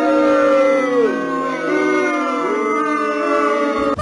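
A long, loud howl made of several overlapping, sliding pitches, held for about four seconds and cut off suddenly at the end.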